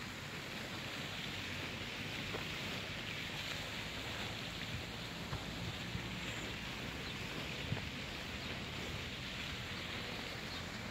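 Steady outdoor hiss with a low rumble underneath and a few faint clicks scattered through it.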